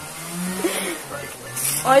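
A quiet murmured voice over a low steady hum, with a brief hiss about one and a half seconds in.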